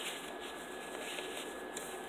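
Faint rustling of paper as a paper tag is lifted out of a journal's page pocket and set back, with a short, sharper rustle near the end.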